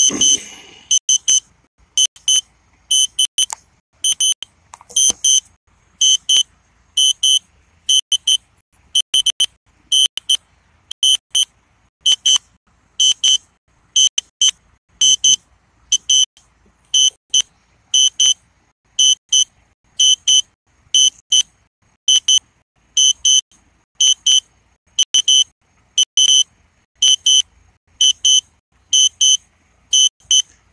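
A drone flight warning beep: short, high electronic beeps repeating steadily, about two a second.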